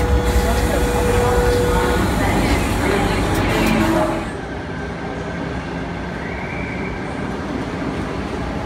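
Sydney double-deck electric suburban train running into an underground station, heard from inside the carriage as a loud, steady rumble with a steady whine over the first two seconds. About four seconds in the sound turns quieter and duller: the train pulling out of the platform.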